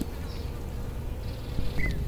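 A bee buzzing in one steady, unchanging tone over a low rumble.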